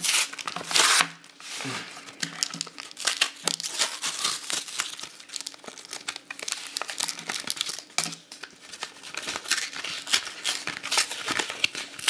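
Cardboard-backed plastic blister packaging of a Pokémon trading-card pack being torn and crinkled open by hand, in irregular crackling bursts, loudest in the first second.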